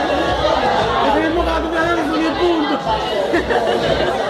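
Many people talking at once: steady, overlapping chatter of a crowded room, with no single voice standing out.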